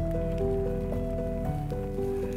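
Background music: a slow melody of held notes that change every half second or so, over a faint hiss.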